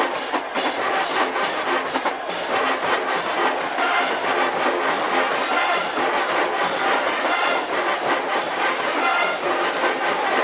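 Marching band playing loudly, brass and drums together with a busy, even drum rhythm.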